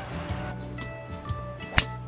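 A golf driver striking a ball off the tee: a single sharp, crisp crack near the end, over background music.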